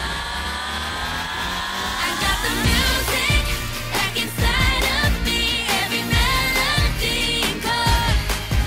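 Upbeat pop song with a sung lead vocal. A held chord rises slowly for about two seconds, then the drum beat comes in under the sung chorus line.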